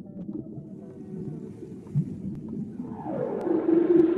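Recorded soundtrack of low, wavering moans and held tones over a steady rumble, with a rush of noise rising in the last second.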